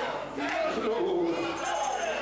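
A man preaching in a loud, raised voice into a handheld microphone, amplified through the hall's sound system.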